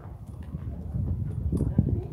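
Distant, indistinct voices over low, uneven wind rumble on the microphone.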